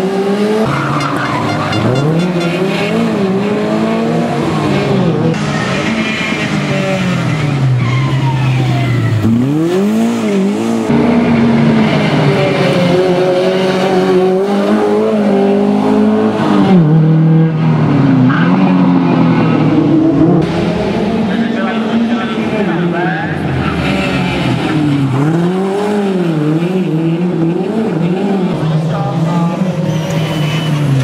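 Škoda 120 S rally car's rear-mounted four-cylinder engine revving up and dropping back again and again as it is driven hard through a stage, with tyre squeal from sliding.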